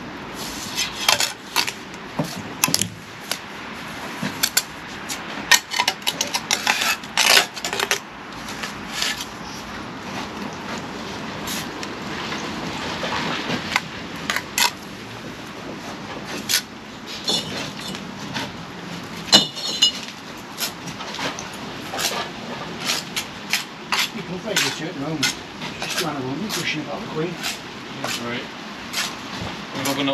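Steel bricklaying trowel clinking and scraping against mortar and bricks while bricks are laid: a run of sharp clinks and scrapes, busiest in the first half.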